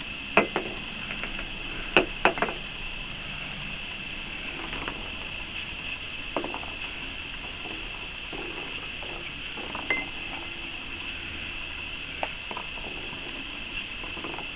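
Baby raccoons feeding at a small dish of kibble: scattered knocks, clinks and patter, with a few sharper clicks, the loudest about two seconds in. A steady high-pitched drone runs underneath.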